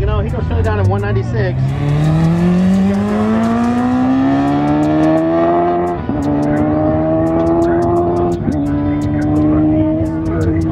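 A high-performance car engine accelerating hard from a launch, its pitch climbing steadily for about six seconds, then dropping at an upshift and climbing again, with a second upshift near the end.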